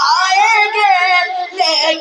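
A boy's voice singing a manqabat, a devotional praise poem, into a microphone, the pitch bending and wavering through long drawn-out notes, with a short break about three-quarters of the way through.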